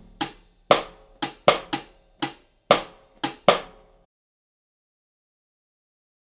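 Taye GoKit drum kit played in a sixteenth-note snare syncopation exercise: hi-hat and snare strokes over bass drum, about nine hits in an uneven, syncopated rhythm. The playing cuts off about four seconds in.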